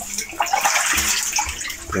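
Water sloshing and splashing as a tightly packed mass of eel-like fish wriggle in shallow water.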